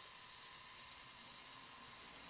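Steady hiss of high-voltage corona discharge from an ion lifter (ionocraft) running under power and hovering on its tethers.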